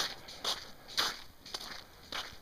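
Footsteps on frozen ice, about two steps a second.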